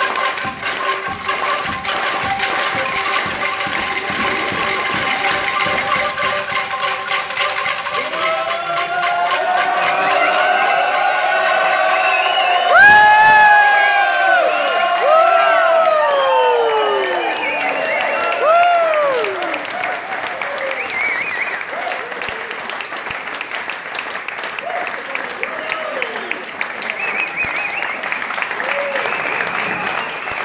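Several handheld bamboo angklung shaken together, holding a steady chord over a dense rapid rattle. From about a third of the way in, voices whoop and cheer in rising and falling glides, loudest near the middle, then the audience applauds.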